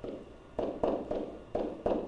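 A stylus knocking and scraping against a touchscreen or interactive board as letters are handwritten, about six short knocks in two seconds.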